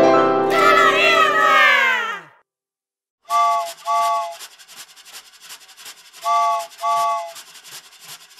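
The end of a bright intro jingle, sliding down in pitch, then a moment of silence. A cartoon steam-train sound effect follows: steady chugging with a whistle sounding two short toots, twice.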